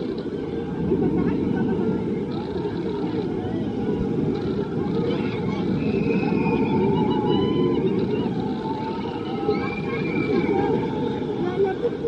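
Riders on a Huss Topple Tower yelling and calling out in many overlapping voices as the tower tips over, loudest in the middle and later part, over a steady low rumble.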